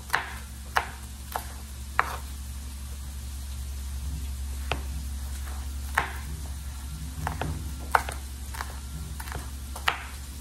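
Chef's knife chopping peppers on a wooden cutting board: sharp, irregular knocks of the blade on the board, with a gap of a couple of seconds about two seconds in, then quicker strokes toward the end. A steady low hum runs underneath.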